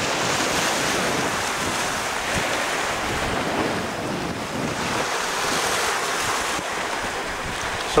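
Small waves washing against the foot of a shore bank at high tide, with wind blowing across the microphone: a steady rushing noise.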